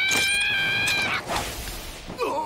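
A long, high-pitched held tone from the anime episode's soundtrack, rising slowly in pitch. It breaks off about a second in and is followed by a short rushing hiss.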